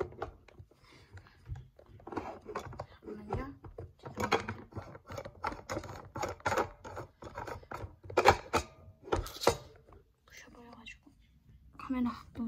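Origami paper crinkling and rustling in quick, irregular crackles as it is folded and handled.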